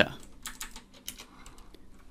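Typing on a computer keyboard: a run of quick key clicks, fewer in the second half.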